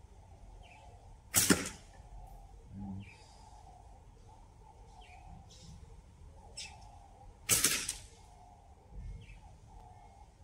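Two slingshot shots about six seconds apart, each a short sharp release of the rubber bands. Birds chirp faintly in the background.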